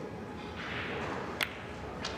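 Pool shot: a sharp click as the cue strikes the cue ball, which is almost touching the pink object ball, about one and a half seconds in, with another click at the very end.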